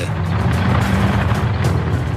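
Engines of armoured military vehicles running as the column drives past, a steady low rumble mixed with background music.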